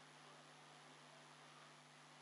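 Near silence: room tone of a low steady hiss with a faint electrical hum.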